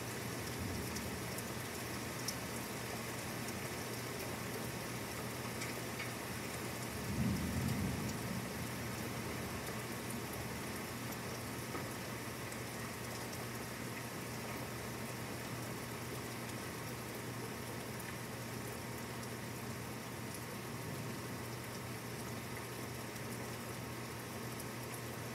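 Steady rain falling in a thunderstorm, with a brief low rumble of thunder about seven seconds in.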